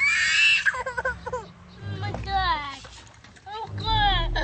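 A child shouting "No!" in a loud, high-pitched shriek, followed by short high-pitched voice sounds.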